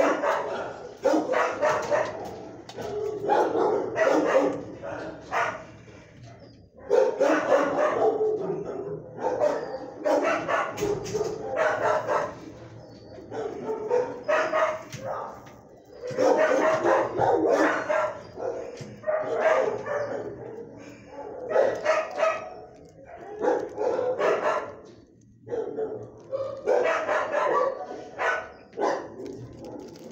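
Dogs barking repeatedly in bouts of quick barks, with short pauses between bouts.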